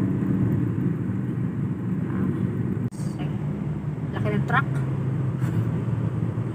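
Steady low road and engine rumble inside a moving car, with a brief break about three seconds in.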